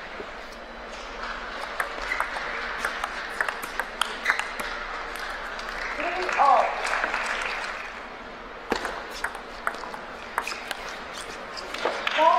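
Sharp, irregular clicks of a table tennis ball striking bats and the table. A spell of crowd applause runs through the middle, with a short shout about six and a half seconds in.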